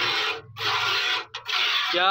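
Cow being hand-milked into a steel bucket: hissing squirts of milk striking the froth of milk already in the pail, one to each squeeze of the teat, about three in quick rhythm.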